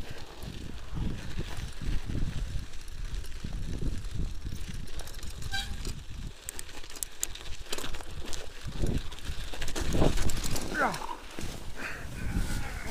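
Wind rumbling on the microphone and a mountain bike's tyres running over packed snow as it is ridden, with scattered clicks from the bike. A brief voice is heard near the end.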